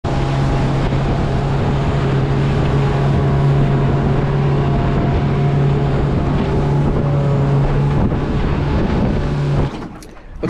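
Motorboat under way at speed: a steady engine drone over rushing water and wind buffeting the microphone, cutting off suddenly near the end.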